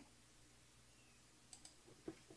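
Near silence with two faint, short clicks about a second and a half in: a computer mouse clicking.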